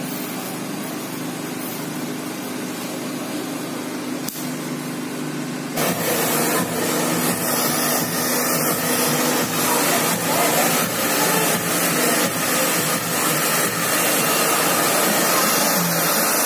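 Electric hair clippers humming steadily during a haircut. About six seconds in, a handheld hair dryer switches on suddenly and blows with a louder, steady rush.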